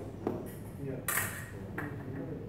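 Steel sabre blades clinking together in three short metallic contacts. The loudest comes about a second in and rings briefly.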